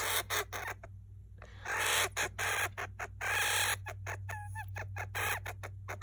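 Agitated hamster vocalizing: harsh, hissy squawks in bursts, the longest running for over a second near the middle, then a short high squeak about four and a half seconds in. The hamster is showing annoyance.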